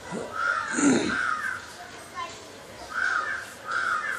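Crow cawing: four short caws in two pairs, one pair about a second in and another near the end.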